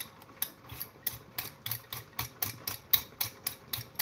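A vegetable peeler scraping the skin off a raw potato in quick, repeated strokes, about three to four a second.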